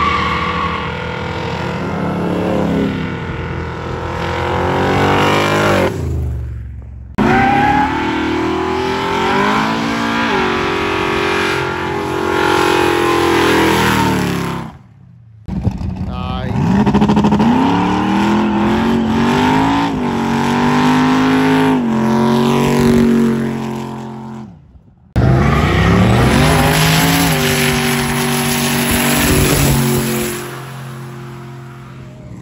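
Car engines revving hard during burnouts, their pitch rising and falling, over the noise of spinning tyres. The sound cuts off abruptly three times between clips.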